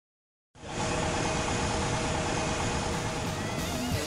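An excavator with a Simex TFC 400 hydraulic drum cutter head running: a steady, dense machine noise with an uneven low rumble. It starts abruptly about half a second in, out of silence.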